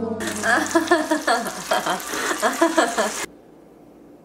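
Hot oil in a deep fryer sizzling and bubbling hard around a large potato fry, with voices mixed in. It cuts off abruptly about three seconds in, leaving quiet room tone.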